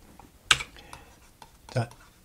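A single sharp click about half a second in, followed by a few faint small ticks, like light tapping on a keyboard or writing surface; a man says one short word near the end.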